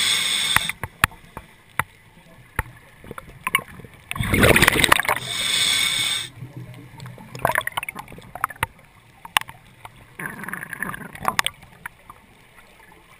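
Scuba regulator breathing underwater: a loud rush of exhaled bubbles and hiss about four to six seconds in, with softer bubbling bursts near the eight- and eleven-second marks. Scattered sharp clicks fall between the breaths.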